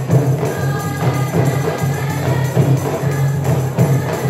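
Marawis ensemble of women singing Islamic devotional song together over a steady rhythm of hand-struck marawis frame drums, the deep drum pulse strongest under the voices.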